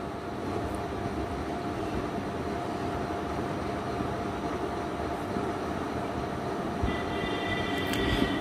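Steady background rumble and hiss with a faint constant hum. A higher sound made of several stacked tones joins about seven seconds in.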